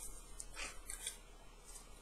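Faint rustling of a comic book being handled, a couple of soft paper scrapes about half a second and a second in.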